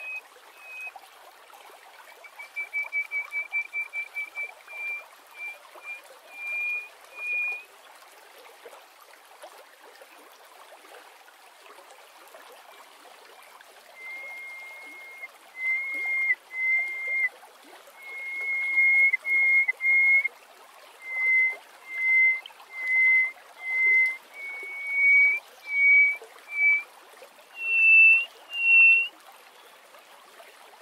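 Hoopoe lark (Alaemon alaudipes) singing a series of clear piping whistles. A quick run of short notes, rising slightly, comes near the start. After a pause of several seconds a longer series of separate notes follows, level at first and then climbing higher and louder toward the end.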